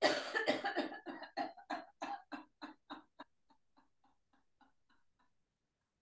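A woman's forced laughter-yoga laugh, a quick 'ha-ha-ha' of about six pulses a second pushed out on one breath. It fades away over about three seconds as the air runs out.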